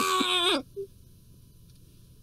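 A man's drawn-out, high wailing cry held on one pitch, cutting off sharply about half a second in; afterwards only quiet room tone.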